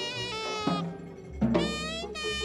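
Live free-jazz ensemble playing: a horn holds slightly wavering, reedy notes over bass and drums. The horn drops away briefly about a second in, then comes back loudly together with a low bass note.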